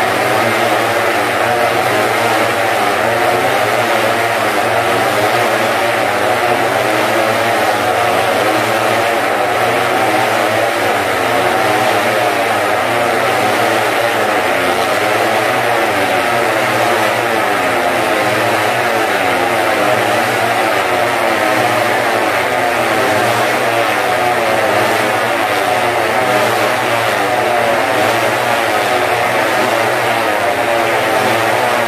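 Several small motorcycle engines running and revving continuously as the bikes circle inside a steel-mesh globe of death. Their pitches overlap and keep rising and falling.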